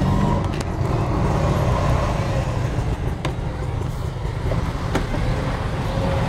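Steady low rumble of road traffic, with a couple of sharp clicks, the first about half a second in and a clearer one about three seconds in.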